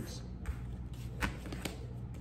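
Tarot cards being handled and drawn from the deck: a few light, sharp clicks and flicks of card stock, spread across the two seconds, over a low steady room hum.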